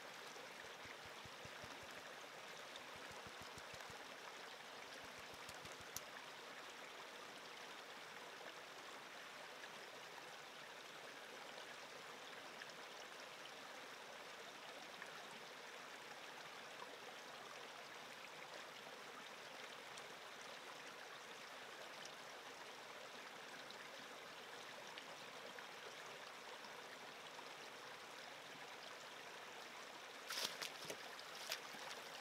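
Small woodland creek running steadily, faint, with one sharp click about six seconds in.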